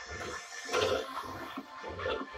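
Music with a steady beat, about three beats a second.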